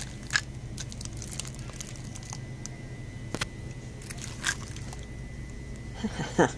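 Cellophane wrapping on packaged fridge magnets crinkling as a hand handles them on a display rack, with a few sharp crackles and clicks, the loudest about three and a half seconds in, over a steady low store hum.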